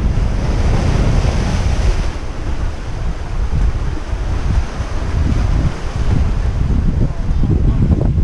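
Wind buffeting the microphone with a heavy low rumble, over sea surf breaking and washing across the rocks below; the hiss of the surf is strongest in the first couple of seconds.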